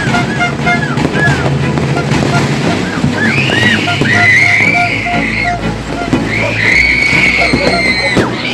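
New Year's Eve din of fireworks and noisemakers: short whistling glides that rise and fall, then long shrill held whistles, twice, over a low rumbling background.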